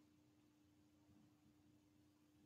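Near silence: room tone with a very faint steady hum.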